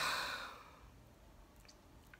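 A man's sigh, a breathy exhale straight after a spoken word that fades out within the first second, followed by near quiet with a couple of faint clicks.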